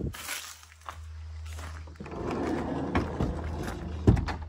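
Footsteps crunching on a gravel path with a few sharper knocks, over a steady low wind rumble on the microphone, getting louder about halfway through.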